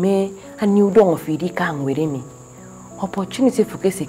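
A woman talking, over a steady high-pitched chirring of crickets.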